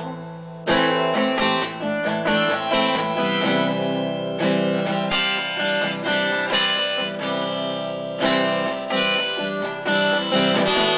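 Acoustic guitar strummed with a harmonica played over it from a neck rack, an instrumental passage with no singing; the music drops briefly in the first second, then comes back in.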